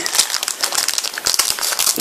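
Clear plastic film wrapping on a magazine crinkling continuously as hands handle it.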